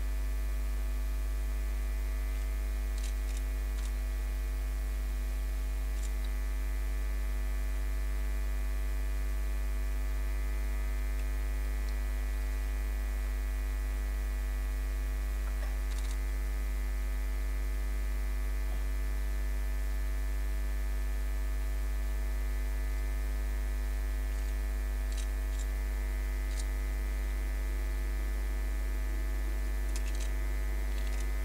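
Steady electrical mains hum: a strong low drone with a stack of higher overtones, unchanging throughout. A few faint, short high chirps sound above it now and then.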